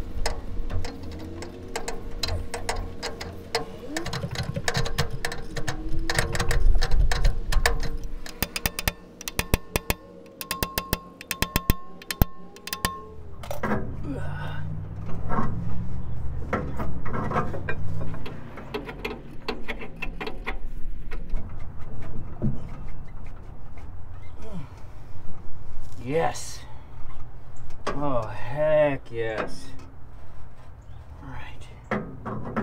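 Metal clicks and knocks of a wrench on the crankshaft nut as a rusted, seized Continental F227 flathead six is rocked back and forth, the crank barely moving. Background music plays along with it.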